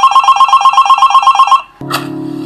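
A telephone ringing: one trilling ring made of fast, evenly repeating pulses, about eleven a second, that stops about a second and a half in.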